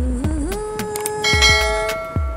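A sung intro jingle: a held note over a light beat, joined about a second in by a bright bell-like chime sound effect that rings on to the end.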